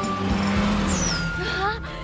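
Sound effect of a turbocharged Toyota Levin accelerating hard: a loud engine note with a rushing turbo noise, and a high whistle falling in pitch about a second in, over background music.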